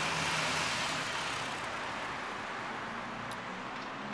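Road traffic noise: a passing vehicle's rushing tyre and engine sound, loudest at first and slowly fading away.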